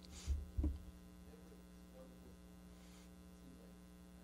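Steady electrical mains hum from the recording chain, with two low thumps in the first second.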